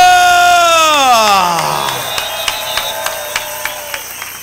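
A man's long, held shout, amplified through a microphone, that slides down in pitch over about two seconds. It is followed by scattered claps and jingles from the congregation.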